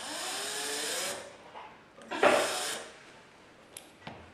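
Cordless drill-driver running in two short bursts, about a second each, driving screws to fix a wall socket. The motor's pitch rises as it speeds up in the first burst, and the second burst, a little after two seconds in, is louder.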